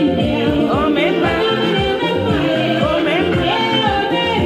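A song playing with a singing voice over a steady drum beat.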